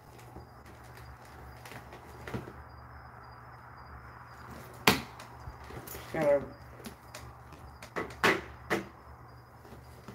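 Handling and rummaging noises from going through a plastic storage bin of handbags: a few sharp knocks and clacks, the loudest about five seconds in and several more near eight seconds, over a steady low hum.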